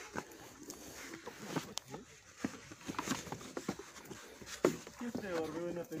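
Indistinct voices of several people talking at some distance, with scattered small knocks and rustles. A nearer voice starts speaking near the end.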